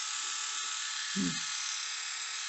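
Philips YS521 rotary electric shaver running steadily on its newly replaced rechargeable batteries: a continuous high, even motor buzz.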